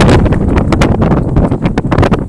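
Loud rumbling buffet of air on the microphone, broken by rapid sharp crackles throughout.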